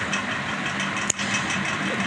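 A steady, machine-like background hum, with a single click a little after a second in.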